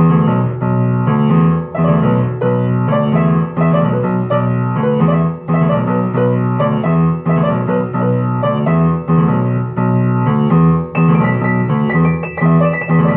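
Piano music with rapid repeated chords over a steady bass, starting abruptly.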